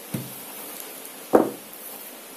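Two wooden knocks from a rolling pin against a dough-covered mat: a soft one shortly in and a louder one a little past the middle, as the pin is put down. Under them runs the steady hiss of heavy rain.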